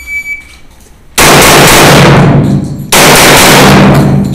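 A shot-timer beep, a single steady high tone about half a second long, then Glock pistol gunfire about a second in, so loud that the recording overloads into two long, unbroken stretches of harsh, distorted noise.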